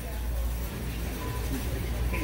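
Big-box store background noise: a steady low hum and hiss with faint distant voices.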